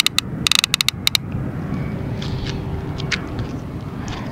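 Fishing reel clicking in a quick run of bursts during the first second as the line is tightened after the cast. After that only a few scattered clicks sound over a steady low background rumble.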